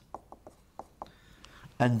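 Whiteboard marker writing a word on a whiteboard: about six short, faint squeaks and taps in the first second. A man's voice starts near the end.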